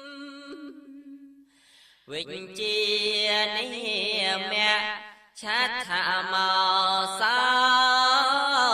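A male voice solo chanting Khmer smot, Buddhist chant in a slow melodic style with long, wavering held notes. A phrase trails off in the first second and a half, a new phrase begins after a short pause, and there is another brief break about halfway through.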